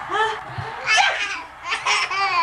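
A baby laughing in short, high-pitched bursts, about three of them.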